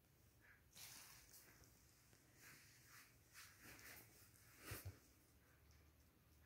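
Near silence: room tone with a few faint rustles and a soft thump near the end.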